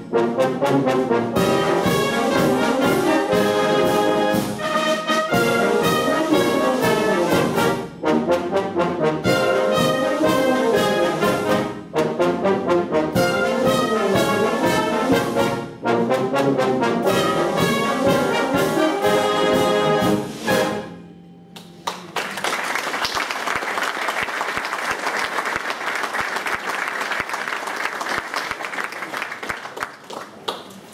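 Brass band (cornets, trombones, euphoniums and tubas) playing a piece in short phrases, which stops about two-thirds of the way through; audience applause follows to the end.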